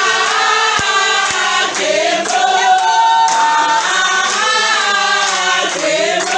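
A group of women singing a song together, with held and gliding notes, and hand clapping keeping time.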